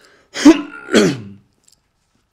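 A man coughing to clear his throat into his hand: two harsh coughs about half a second apart, the first the louder.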